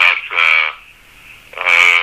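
A man's voice making two drawn-out, held hesitation sounds with a pause of about a second between them.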